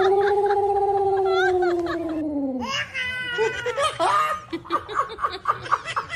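A long, held, high 'ooo' voice, wavering slightly and dipping in pitch as it ends after about two and a half seconds, then a baby and a man laughing in quick, choppy bursts from about three seconds in.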